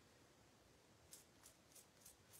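Faint, quick flicks of a finger dragged across toothbrush bristles, spattering white paint, about three a second from about a second in.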